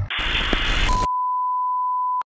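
Video-editing transition effect: about a second of TV-style static hiss, then a steady, loud, single-pitched beep like a test tone that carries on past the end.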